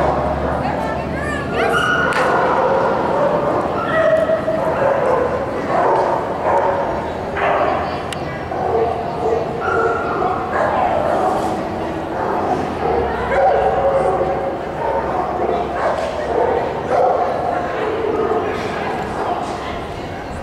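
Dogs barking and yipping again and again through the whole stretch, over the chatter of people around an agility ring.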